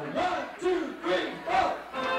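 A voice shouting four short calls at an even beat, about two a second, over a lively room: a count-in that leads straight into the band's song.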